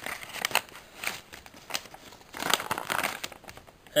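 Paper wrapping handled and unfolded by hand: irregular rustling and crinkling, heaviest a little past halfway.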